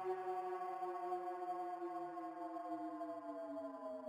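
Background music: a single held tone rich in overtones, sliding slowly and steadily down in pitch.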